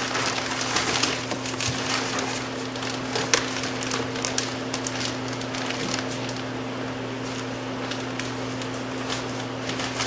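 Plastic bag liner crinkling and rustling as it is gathered and handled inside a cardboard box, with many small irregular crackles, over a steady low hum.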